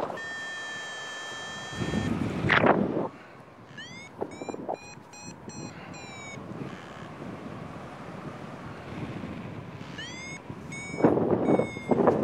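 Paragliding variometer beeping: a long steady beep, then two runs of short beeps, each beep sliding up in pitch at its start, the instrument's signal for rising air. Gusts of wind hit the microphone between the beeps, loudest near the start and near the end.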